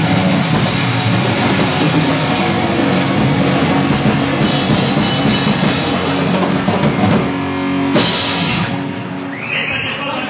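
Rock band playing loud, with a drum kit driving it, a cymbal crash about eight seconds in, and the music easing down near the end.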